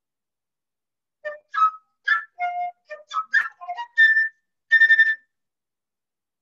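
Solo flute playing a short phrase of quick, detached notes that begins about a second in and ends on two longer notes at the same high pitch.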